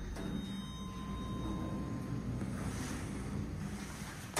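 OTIS Genesis elevator's stainless steel landing doors sliding open: a steady low running noise, with a faint thin whine in the first half.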